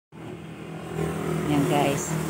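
A motor vehicle engine running steadily nearby, a low even hum. A short bit of a voice comes in near the end.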